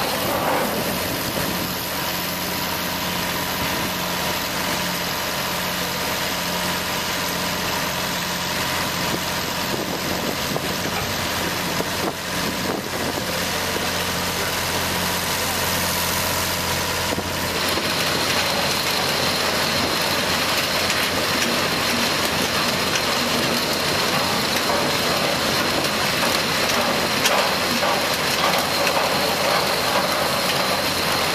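Diesel engine of a sugar-cane elevator (loader) running steadily, mixed with the dense noise of cut cane being carried up the elevator and dropped into a punt. About halfway through, it gets slightly louder and a high steady whine joins in.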